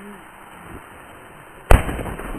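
A New Year's firework rocket's burst charge going off at ground level with a single sharp bang near the end, followed by a few smaller pops as its stars scatter.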